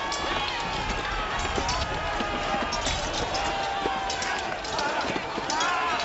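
Battle din: many men shouting and yelling at once, with scattered clashes of weapons and shields.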